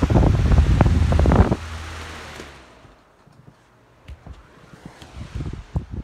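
Lasko electric fan running on high, its airflow buffeting the microphone loudly for about the first second and a half, then fading away. Quieter after that, with a few short knocks and rustles of handling.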